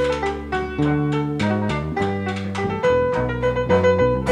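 Jazz trio playing live: grand piano, bass guitar and drum kit in a quick passage of many short notes over a moving bass line.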